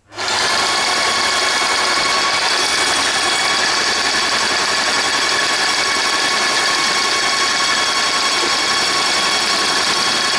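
Airless paint sprayer running with the gun triggered into a paint tin: a loud, steady spray and machine sound that starts suddenly and holds even. The paint is being recirculated through the hose and gun back into its tin.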